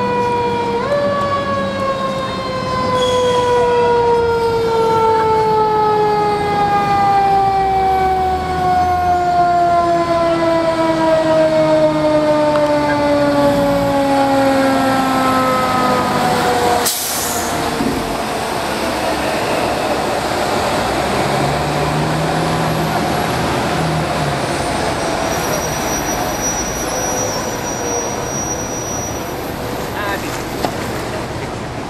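Fire truck siren winding down, its pitch falling slowly for about fifteen seconds before ending abruptly. After that, the truck's engine and street traffic hum on.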